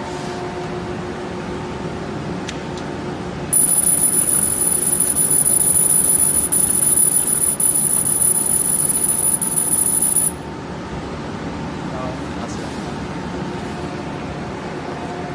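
CO2 galvo laser cutter kiss-cutting a sheet of printed labels: about three and a half seconds in, a loud steady high-pitched whine with a hiss comes on, lasts about seven seconds, and cuts off suddenly when the cut is done. A steady machine hum runs underneath throughout.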